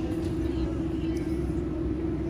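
Steady low rumble with a constant droning hum underneath, and faint voices of people nearby.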